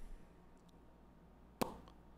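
A single sharp click about one and a half seconds in, over quiet room tone with a faint low hum.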